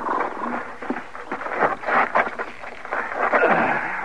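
Radio-drama sound effects of horses: horse sounds amid scattered clatter, with a falling call about three and a half seconds in.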